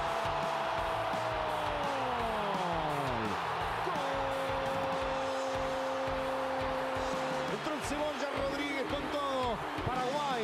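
A football commentator's long drawn-out goal cry, held steady and then falling in pitch, followed by a second long held cry, over steady stadium crowd noise. Ordinary fast commentary resumes near the end.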